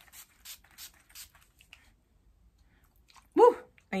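Pump-spray bottle of Ben Nye Final Seal makeup setting spray misting the face: a quick series of about six short hissing sprays in the first two seconds. Near the end, one short loud exclamation from a woman's voice.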